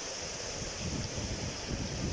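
Wind buffeting the microphone: an uneven low rumble that grows stronger about a second in, over a steady high hiss.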